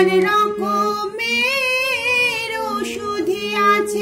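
Harmonium playing a slow melody in held notes that step from one pitch to the next, with a woman singing the tune along with it. Her voice wavers on a long held note in the middle.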